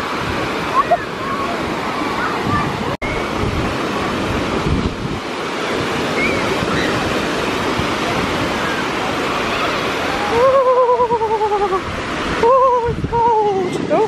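Small waves breaking and washing up the sandy shore, a steady rush of surf. Near the end a voice gives two long, wavering calls that slide slightly down in pitch.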